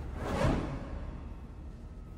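A whoosh sound effect for an animated logo reveal. It swells to a peak about half a second in, then fades away under a low rumble.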